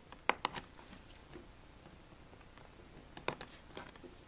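Faint, sharp clicks and taps of fingertips and a small hand tool on vinyl wrap over a laptop's plastic lid: a cluster of three or four just after the start, and another few about three seconds in.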